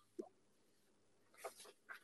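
Near silence on a video-call feed, broken by a few faint short sounds: one just after the start and a few more near the end.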